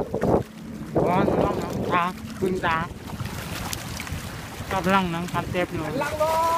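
Wind buffeting the microphone, a low rough rumble throughout. Over it a voice calls out several times in drawn-out, wavering exclamations, about a second in, around two seconds and near the end.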